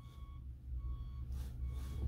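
A vehicle's reversing alarm beeping repeatedly and faintly, over a steady low rumble.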